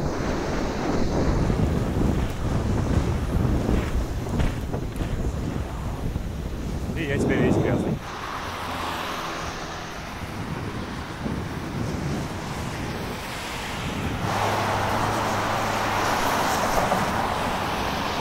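Wind buffeting the microphone of a GoPro action camera carried on a moving mountain bike, mixed with road and traffic noise. The sound drops suddenly about eight seconds in, and a steadier hiss takes over for the last few seconds.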